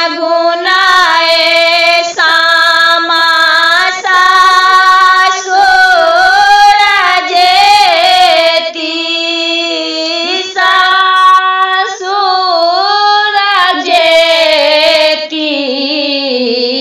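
A woman singing a Maithili Sama-Chakeva samdaun, a farewell folk song, in long held notes joined by wavering slides.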